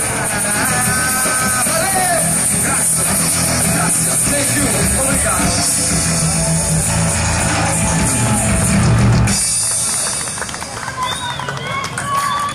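Rock-style band music with a strong bass line and sung or played melody lines, which cuts off suddenly about nine seconds in, leaving scattered outdoor voices.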